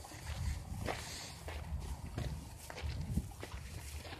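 Close rustling with scattered light clicks and a low, uneven rumble: movement and handling of clothing and gear right at the microphone.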